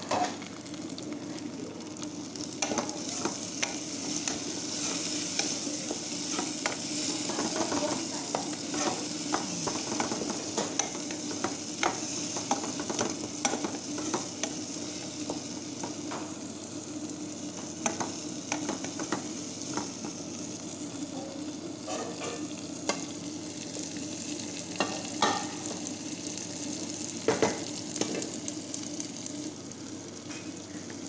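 Chopped tomatoes and onions sizzling in oil in a nonstick frying pan while a wooden spoon stirs them. Frequent light scrapes and taps of the spoon against the pan sound over the steady sizzle.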